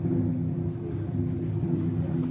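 Big drums played by a street drumming group, heard through a closed window as a low, muffled rumble with little above the bass.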